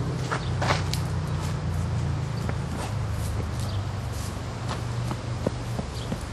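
Footsteps walking on dirt and grass, scattered soft steps and scuffs over a steady low rumble on the microphone.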